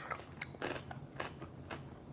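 A person chewing food with the mouth closed, close to a clip-on microphone: soft, irregular wet clicks of the mouth, with a sharper one right at the start.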